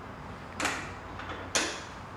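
Two short knocks of hardware, about a second apart, as the mirror's bolt and square-tube end are fitted through the golf cart's roof-mounted mirror bracket.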